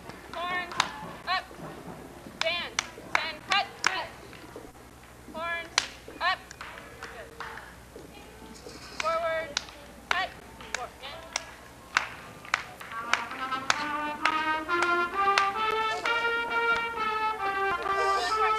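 Scattered short pitched notes and sharp clicks, then, about two-thirds of the way through, a brass instrument slides upward in pitch and plays a stepped run of held notes.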